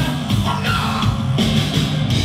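Loud rock band music: electric guitar, keyboards and a drum kit playing together, dense and continuous.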